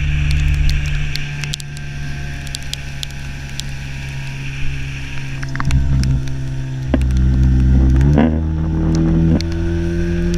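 18 hp Tohatsu outboard motor running under way with splashing water. Its note is steady at first, then shifts several times in the second half, rising just after eight seconds and holding higher.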